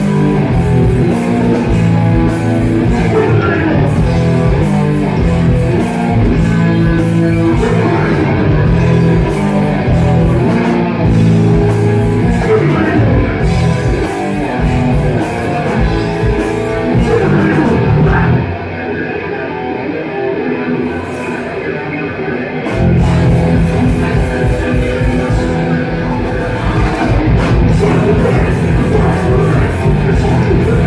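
Live hardcore punk band playing loud: distorted electric guitars, bass and drums, with a vocalist. About two-thirds of the way in, the band drops to a quieter, thinner passage for about four seconds, then comes back in at full volume.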